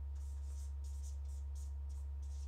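Marker pen writing on a whiteboard: a run of short scratchy strokes, about three a second, over a steady low hum.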